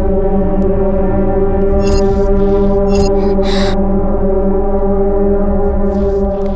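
Suspenseful film background score: a loud, sustained low drone chord held steady. A few brief ticks and a short swell of noise come a little past the middle.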